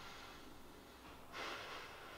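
A man breathing heavily close to a microphone, a sharp breath drawn in about a second and a half in.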